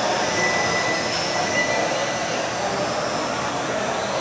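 1/12-scale electric RC pan cars with 17.5-turn brushless motors racing on carpet: a steady high motor whine mixed with tyre and hall noise, with a thin high tone for about the first second.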